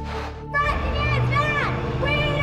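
A brief rush of hiss-like noise, then a group of young voices shouting a protest chant together over steady background music.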